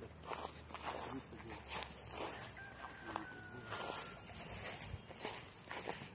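Chickens clucking in a farmyard, with a rooster crowing once in the distance, a thin drawn-out call in the middle.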